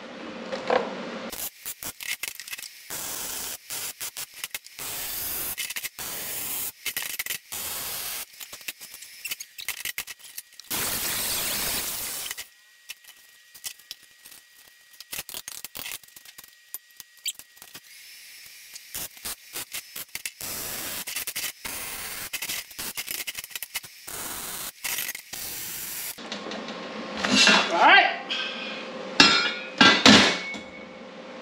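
MIG welder welding steel tubing: crackling arc in many short stop-start runs, with a longer unbroken run about eleven seconds in and a quieter pause in the middle. Short vocal sounds near the end.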